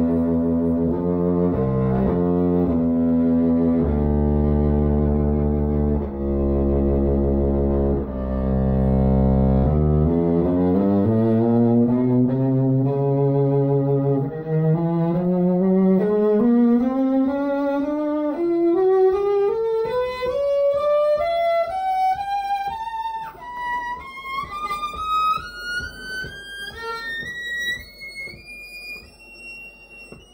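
Electric cello played with the bow: long, low sustained notes for the first third, then a run of short notes climbing steadily higher, the playing growing quieter near the end.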